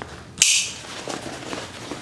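A roll-top backpack's buckle clicking shut once, about half a second in, followed at once by a short swish of the pack's fabric, then faint handling noise.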